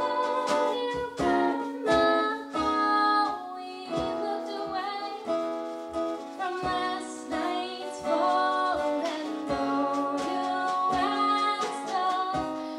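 Live acoustic band playing a song: a woman singing over strummed acoustic guitar, with a second small plucked string instrument and steady percussion strokes.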